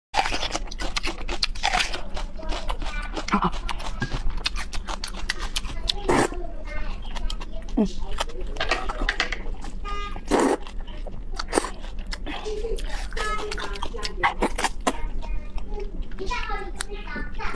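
Close-miked eating sounds: a crunchy bite of raw red onion at the start, then repeated wet slurping and chewing of noodles from a spicy broth, thick with quick crackling clicks.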